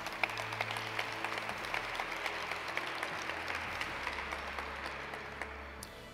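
Audience applauding, a steady patter of many hands that fades away near the end.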